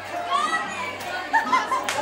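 Children's voices chattering and calling out, several at once in a room, with a couple of sharp clicks.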